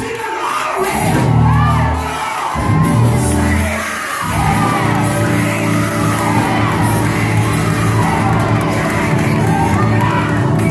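Live church music with sustained low bass tones running throughout, with voices shouting and whooping over it.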